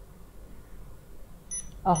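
Touch-screen ventilator controller giving two short, high key-press beeps in quick succession about a second and a half in, over a low steady hum.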